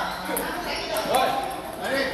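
Table tennis ball knocked back and forth in a rally, a few sharp clicks of ball on paddle and table, over people talking in a large hall.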